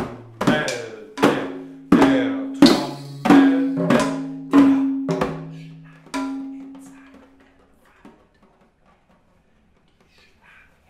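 Hand-held frame drums struck with the hands, about a dozen beats at a slowing pace with a low ringing tone under them; the last beat comes about six seconds in and the ringing dies away soon after.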